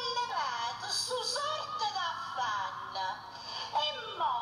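An elderly woman's voice reciting a poem in southern Italian dialect into a microphone, in a high, swooping, sing-song delivery close to a wail, with a short pause near the end.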